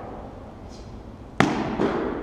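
A foam practice sword strikes a shield with one sharp smack about one and a half seconds in, echoing in the gym. A lighter knock follows just after.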